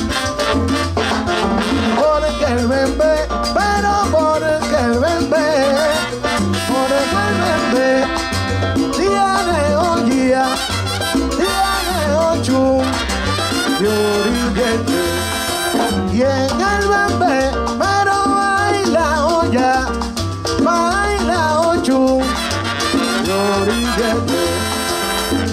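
Live salsa band playing an instrumental stretch with brass lines over keyboard, timbales and congas, with maracas.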